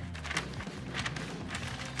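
Peach butcher paper crackling and rustling in a string of short, sharp crinkles as it is folded and pressed tight around a rack of ribs, over a steady low hum.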